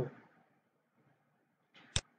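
Near silence, then near the end a brief soft noise followed by a single sharp click.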